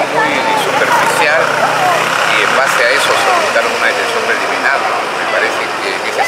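Voices talking over street traffic, with a vehicle's engine running underneath, strongest in the first couple of seconds.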